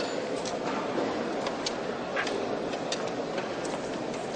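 Mess-hall din of many people murmuring, with scattered sharp clinks of metal spoons against metal trays and cups.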